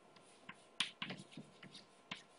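A faint series of short, light clicks and taps, about half a dozen over a second and a half.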